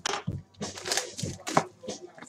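Crackling and rustling of shrink-wrapped cardboard trading-card boxes being handled and moved, in a quick run of sharp crackles.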